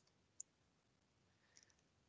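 Near silence: room tone with a faint click about half a second in and a fainter tick near the end.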